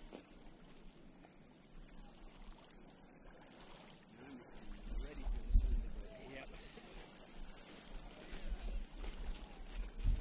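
Small waves lapping on a pebble lakeshore, with wind gusts buffeting the microphone, strongest about halfway through and again near the end. Faint distant voices are also heard.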